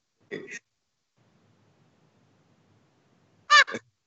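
Two brief bursts of a person's laughter: a soft one about a third of a second in and a louder, high-pitched one near the end, with near silence between.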